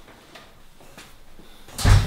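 A door shutting with one heavy thud near the end, after faint rustles and small knocks of movement.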